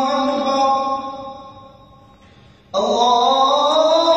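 A muezzin chanting the adhan, in its opening 'Allahu akbar' phrases: a long held note fades out into a breath pause, then the next phrase comes in sharply about three-quarters of the way through and rises in pitch.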